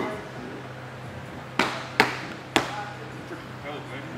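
Three sharp smacks in quick succession, about half a second apart, over a steady low hum.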